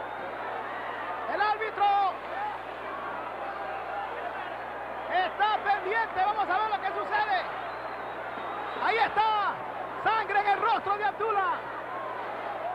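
Wrestling crowd at ringside: a steady background of crowd noise, with spectators yelling in three short spells of shouts, about two seconds in, from about five to seven seconds, and from about nine to eleven seconds. A low steady hum runs underneath.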